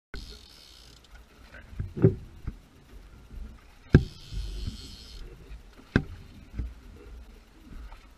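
Sharp knocks and bumps from a camera being handled and set in its mount, three of them about two seconds apart, over a low wind rumble on the microphone.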